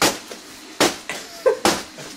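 A shoe stomping on a plastic bag of ice on a carpeted floor to break the ice up: four sharp thuds, the last two in quick succession.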